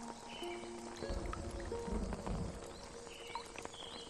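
Slow ambient music with long held notes that change pitch every second or so, over rain and short bird chirps. A low rumble comes in about a second in and fades out.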